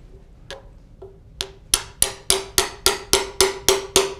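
A small hammer tapping a steel probe set into a timber bridge cap, each tap a sharp click with a short ringing note. Two light taps come first, then about ten steady taps at roughly three a second. Each tap sends a stress wave across the timber to a second probe, so that a stress wave timer can time its travel and reveal decay.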